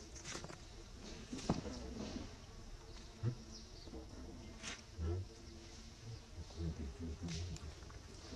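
Insects buzzing, with scattered small clicks and a few short low thumps.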